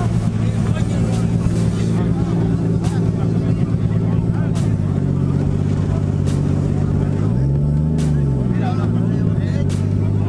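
Car engine idling with a steady low note, rising in one short rev about three-quarters of the way through and settling back to idle. People are talking in the background.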